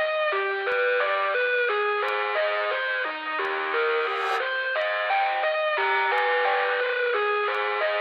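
Sped-up nightcore remix of an electronic dance track in a breakdown: a bright synth melody of quick stepped notes plays with the bass dropped out and no vocals.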